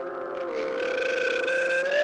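A long, steady pitched drone, one held note with a slight waver.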